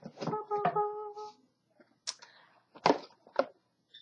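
A steady pitched tone lasting about a second near the start, then a few sharp clicks and taps of a cardboard camera box being handled and lifted.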